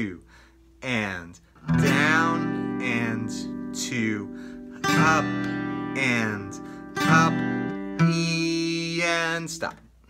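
Steel-string acoustic guitar strumming open chords, several strums that ring out between them, with a man's voice counting along.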